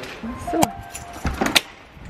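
Keys jangling and a few sharp clicks as an apartment door's electronic lock and handle are worked to get in.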